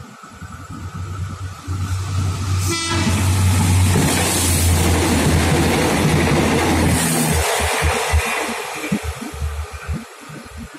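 Passenger train approaching and passing close by at speed. A low steady hum builds into a loud rushing roar of wheels on rail, loudest in the middle. Near the end it gives way to irregular clacking as the last cars go by.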